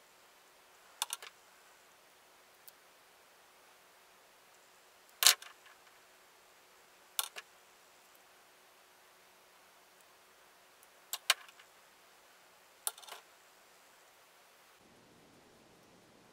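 Light, sharp clicks and taps of a small screwdriver working on a plastic servo case as its screws are driven in, coming in five short spaced clusters, the loudest about five seconds in.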